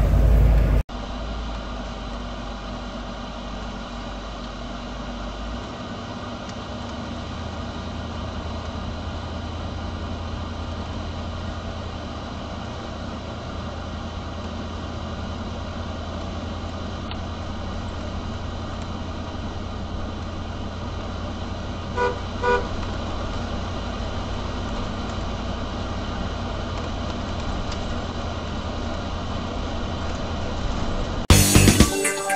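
Steady low engine and road drone inside the cab of a 1982 Fleetwood Tioga Class C motorhome under way. Two short car-horn toots come about 22 seconds in.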